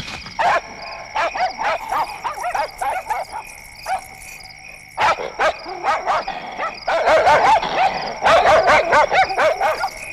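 Dogs barking and yelping in short, repeated barks, sparse at first and coming thick and fast from about seven seconds in.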